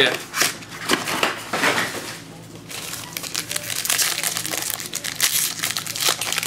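Foil trading-card pack wrappers crinkling and rustling in the hands while a cardboard box is handled, with a quieter moment about two seconds in, then steady crinkling as a gold foil pack is worked open.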